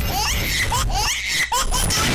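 Several voices laughing and giggling.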